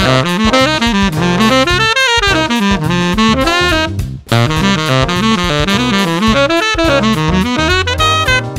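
Tenor saxophone playing fast jazz lines that sweep quickly up and down in pitch, with a short break about four seconds in.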